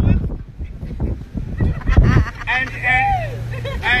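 Wind buffeting the phone's microphone with a low rumble, then a voice speaking from about halfway through.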